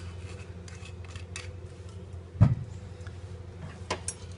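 Glass bottle and glassware handled at a bar counter: small clicks and clinks, and one dull thump about two and a half seconds in as the bottle is set down, over a steady low hum.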